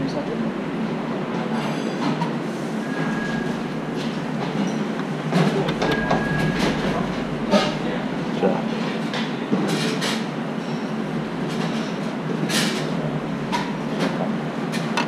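Busy professional kitchen background: a steady noisy rumble with scattered clicks and clinks of utensils and plates, and two brief high beeps a few seconds apart.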